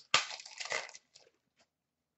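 Foil hockey card pack wrapper crinkling in the hands: a sudden burst of crackling lasting under a second, followed by a few faint crackles.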